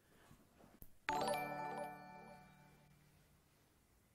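A single bright electronic chime with many overtones. It strikes suddenly about a second in and rings away over about two seconds, the kind of alert that plays for a new follower on a stream.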